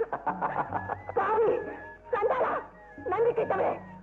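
Film background music with a goat bleating three times, each call short and wavering.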